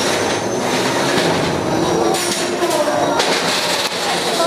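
A combat robot's spinning weapon whines at a steady high pitch after spinning up, with a lower hum beneath it. The whine stops about three seconds in.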